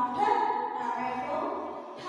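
A woman singing in long, held notes.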